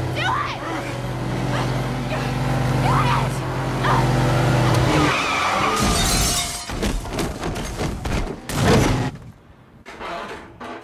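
Film soundtrack of a high-speed car crash. A steady engine drone runs under shouting voices, then about five seconds in comes the sound of breaking glass and a run of heavy impacts as the car flips over several times. It dies down near the end.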